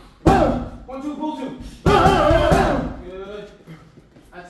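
Punches landing on focus mitts: two loud smacks about a second and a half apart, each followed by a voice-like sound, with background music.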